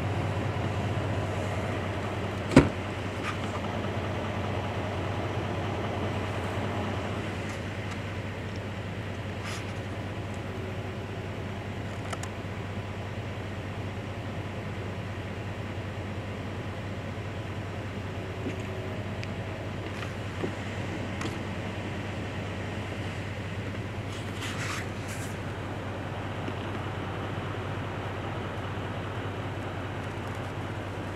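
Truck engine idling steadily, a low even hum. One sharp click sounds about two and a half seconds in, and a few faint ticks follow later.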